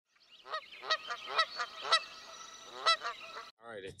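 A bird calling five times in short calls: four in quick succession about half a second apart, then one more about a second later, over a faint steady hiss.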